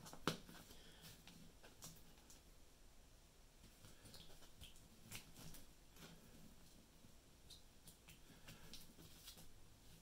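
Near silence with a few faint, sharp clicks of yellow plastic XT90 battery connectors being handled and pushed together, the clearest about a third of a second in.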